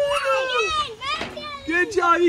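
Young children shouting and squealing in play, their high voices rising and falling in pitch.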